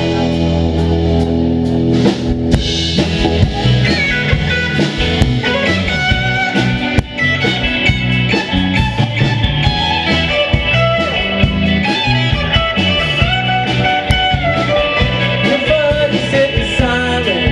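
Live rock band playing: two electric guitars with sustained and bending notes over an electric bass and a drum kit keeping a steady beat.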